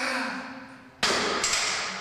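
Sounds of a heavy barbell bench press: a short strained sound at the start, then a sudden loud hissing burst about a second in that fades away over the following second.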